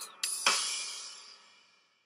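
The song's music ends on a short hit followed by a cymbal crash that rings out and dies away by about a second and a half in.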